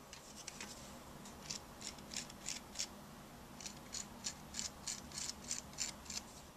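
A hand-held pad or tool rubbing the bottom of an unfired clay cup in short scratchy strokes, about three a second, in two runs with a brief pause about halfway.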